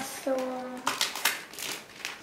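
A sticker sheet crinkling and crackling in short, irregular bursts as a child peels a sticker off its backing.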